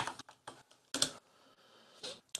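Computer keyboard keys tapped in a short, irregular run of clicks, typing a name into a software dialog. The loudest click comes about a second in, and the clicking stops soon after.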